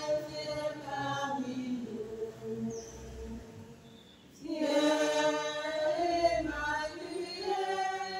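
A group of voices singing in chorus the short sung response to a prayer intention. They sing two sustained phrases with a brief break about four seconds in.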